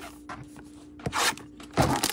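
A cardboard trading-card hanger box handled and slid on the table: a short scrape about a second in and a louder scuff near the end.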